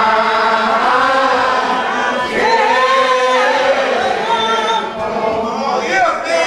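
A church congregation singing together in the old-school style, many voices in long held, sliding phrases.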